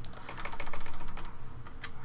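Computer keyboard typing: a quick run of keystrokes, densest in the first second and a half, with a few more near the end.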